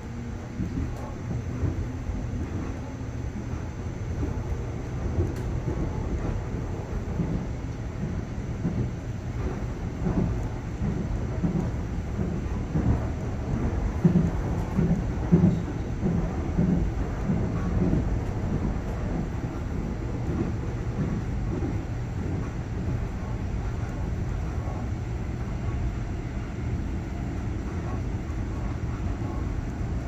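Suin–Bundang Line electric commuter train running, heard from inside the carriage as a steady low rumble. About halfway through comes a run of louder, evenly repeating thuds.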